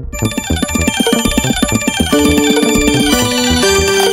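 Background music with a steady beat; held melody notes come in about halfway through.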